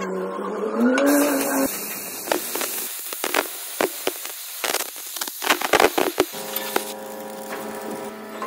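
Oxy-fuel cutting torch hissing and crackling as it cuts through steel plate, with many sharp crackles over the steady rush of the flame. It opens on a brief wavering pitched sound and gives way near the end to a steady machine hum.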